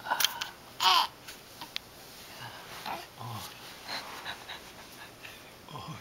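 Baby's short, strained vocal sounds during tummy time: a loud squeal falling in pitch about a second in, then softer grunts and fussing noises.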